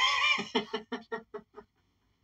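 A man laughing: a loud opening burst that breaks into a run of quick ha-ha pulses, fading out about a second and a half in.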